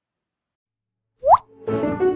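Silence, then about a second in a short rising plop sound effect, followed by the start of a logo jingle with held chords.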